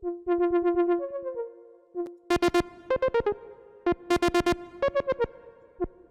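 u-he Diva software synthesizer playing a fast arpeggio of short, plucky notes, its tone being reshaped as its parameters are tweaked. Groups of much brighter, clickier notes come in about two, four and six seconds in.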